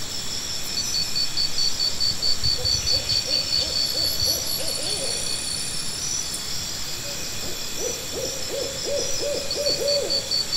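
A rapid series of short hoots at one pitch, in two runs. The second run, near the end, is faster at about four hoots a second, like a gorilla's hoot series. A steady, rapid high insect chirping runs beneath.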